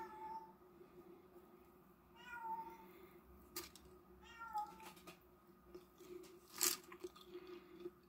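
Three short, high-pitched animal calls, each about half a second long and about two seconds apart, bending slightly in pitch. Two sharp clicks follow, the louder one near the end.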